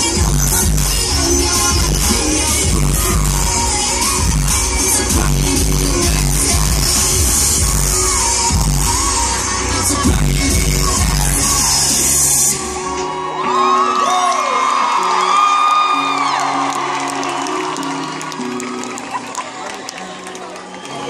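A rap beat playing loudly over the concert PA with a crowd around the microphone; the beat cuts off suddenly about twelve seconds in. After it, fans keep screaming and cheering over softer held notes.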